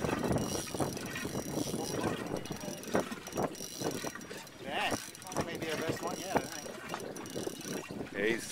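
Spinning fishing reel clicking and ratcheting in a rapid, irregular stream while a hooked shark is fought on the line.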